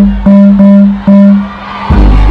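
Live dancehall concert music through a stadium PA. The beat drops out and one low note is held in about three stabs, then the full beat comes back in near the end.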